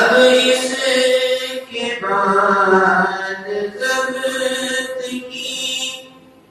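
A man chanting a manqabat, an Urdu devotional praise poem, in long held melodic phrases with brief breaks between them. The voice comes in suddenly at full strength.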